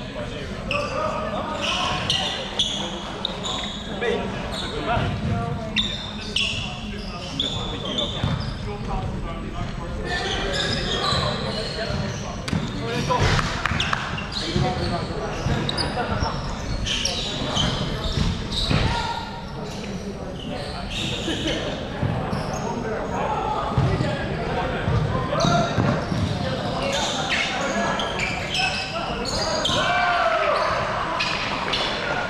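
A basketball bouncing repeatedly on a hardwood court, among players' voices, with the echo of a large sports hall.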